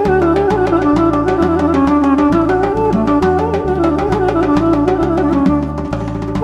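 Instrumental Armenian dance tune with an ornamented duduk melody over a quick, steady percussion beat and a moving bass line.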